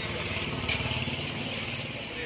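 A small engine running steadily with a fast, even pulse, with one short sharp click about two-thirds of a second in.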